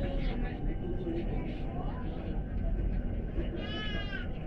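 Steady low rumble of a bus running along the busway, heard from inside the cabin, with faint voices. Near the end comes a brief high-pitched wavering squeal that bends down in pitch.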